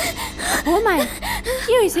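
A woman gasping and moaning in distress, a string of short cries that rise and fall in pitch.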